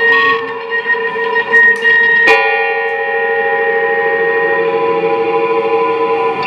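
Electric guitars played through effects pedals, holding long, overlapping tones. A sharp plucked attack a little over two seconds in brings in a new set of held notes.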